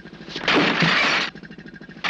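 A heavy hay bale crashing down from the loft onto a wheelchair, a loud crash lasting about a second that starts about half a second in. Under it, an irrigation pump chugs with a rapid, even beat.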